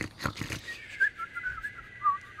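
A few soft rustles, then from just under a second in a thin, wavering whistle that wobbles up and down in pitch: a comic whistling-snore effect for the puppet characters fast asleep under the quilt.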